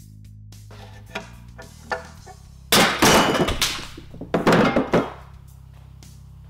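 A heavy cast-iron end bell of an old three-phase electric motor is worked loose from the stator housing and set down on a wooden bench. There are two light knocks, then two loud clunks with scraping and a metallic ring, each under a second, about three and four and a half seconds in, over background music.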